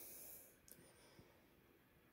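Near silence: room tone, with a faint tick about two-thirds of a second in.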